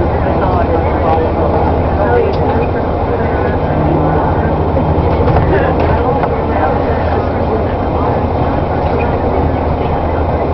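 Cabin sound of a moving bus: a steady low engine drone with road and tyre noise.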